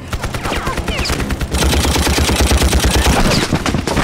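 Sustained rapid machine-gun fire with bullets striking dirt. It grows heavier and denser about a second and a half in.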